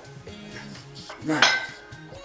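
Iron weight plates of two plate-loaded dumbbells clinking together once, with a short metallic ring, over background music.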